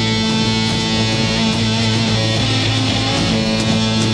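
Psychedelic rock instrumental passage: electric guitar playing over a steady, sustained low note.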